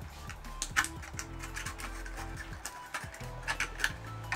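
Box cutter blade cutting around a thin plastic drink bottle: irregular small clicks and crackles as the blade works through the plastic, over quiet background music.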